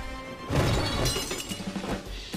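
A hit about half a second in, then something shattering, its pieces ringing and scattering for about a second, over music.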